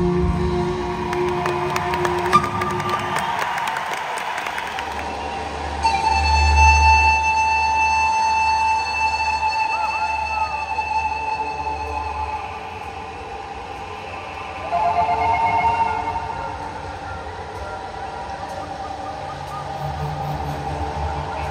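Live band music in a concert hall: long-held, wavering melody notes from a wind-instrument lead, likely pan flute, over bass, drums and keyboards, with the loudest stretch from about six to twelve seconds in.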